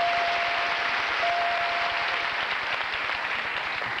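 Studio audience applauding steadily. Over it a single steady chime tone rings twice, in the first two seconds, as found letters light up on the game-show puzzle board.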